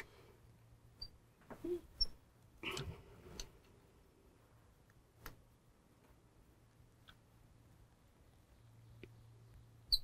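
Faint, scattered small handling sounds at a fly-tying vise: brief clicks and light rustles as a feather wing is held against the hook and wrapped on with tying thread.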